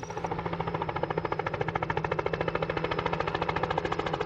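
Small helicopter's main rotor chopping in a fast, even beat, with a steady engine hum underneath.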